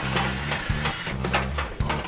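Cordless drill-driver running for about a second as it works the bolt that holds a car's steering column, over background music with a steady bass line.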